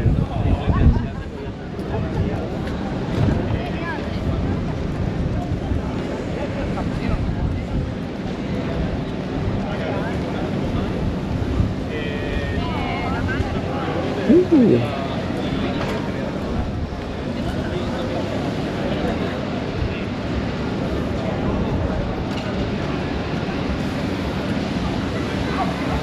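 Wind buffeting the microphone with a steady low rumble, over the background chatter of people in an open area. About halfway through there is a brief loud sound with a sliding pitch.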